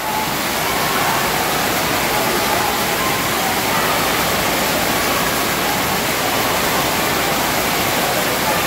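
Water pouring down in a steady curtain from an overhead water-park fountain and splashing into a shallow pool, a constant rushing.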